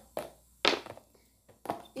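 Three short knocks and taps of a plastic margarine tub and a table knife being handled and set down on a tabletop, the loudest about two-thirds of a second in.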